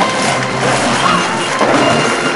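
Music playing over a dense, steady din of noise.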